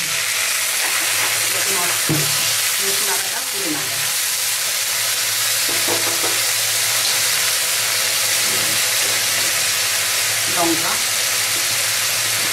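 Sliced onions sizzling in a hot wok as liquid is poured onto them, the hiss jumping up at once and then holding as a steady, loud frying sizzle while a wooden spatula stirs.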